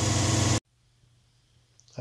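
A machine running with a steady low hum that cuts off abruptly about half a second in, followed by near silence.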